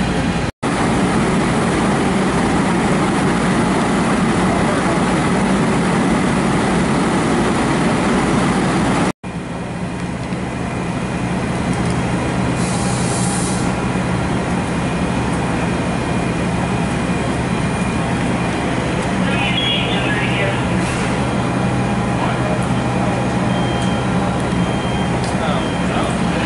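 Fire apparatus diesel engine running steadily, a constant low hum, with faint voices under it. The sound cuts out sharply for an instant twice, near the start and about nine seconds in.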